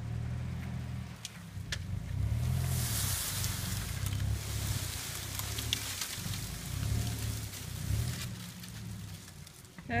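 A 4WD's engine running under load as it drags a fallen tree along the ground on a recovery strap, with the dry branches scraping and crackling; a rush of scraping comes about two to four seconds in.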